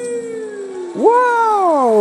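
A held, slowly falling sung note ends about a second in, and a single loud voice cry follows at once, leaping high and then sliding steadily down in pitch for about a second and a half.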